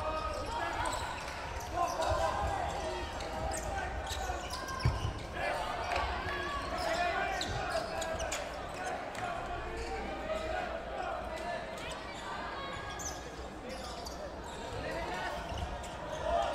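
Sound of a cloth dodgeball game: indistinct calling and chatter of players and spectators over scattered thuds of balls hitting the wooden floor and players, with one louder thump about five seconds in.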